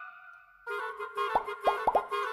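Cartoon sound effects: four quick plops in a row about two thirds of the way through, over a light, pulsing children's-show music chord that starts after a short pause.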